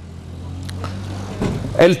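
A low steady hum that grows gradually louder, with a man's voice starting near the end.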